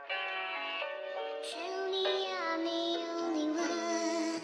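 Background music with a voice-like lead melody over held notes; the melody slides down between notes about halfway through.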